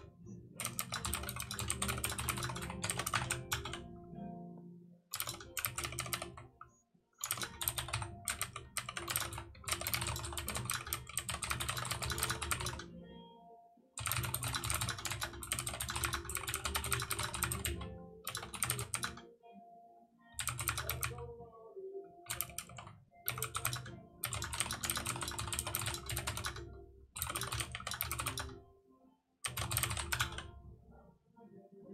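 Typing on a computer keyboard in fast runs of a few seconds each, broken by short pauses.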